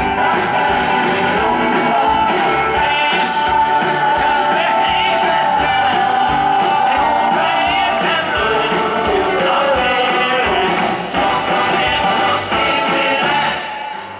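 Live rock and roll band playing a fast number with a steady drum beat and singing over it. The music drops away near the end.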